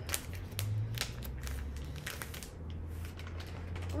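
Small clear plastic bag crinkling as it is opened by hand to take out a sample of wool fibre, a run of quick sharp crackles that thins out about two and a half seconds in.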